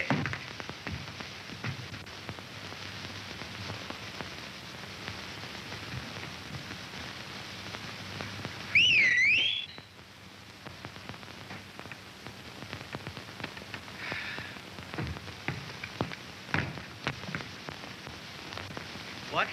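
Hiss and crackle of an old film soundtrack, with one short wavering whistle, swooping down and up in pitch, about nine seconds in; the whistle is the loudest sound.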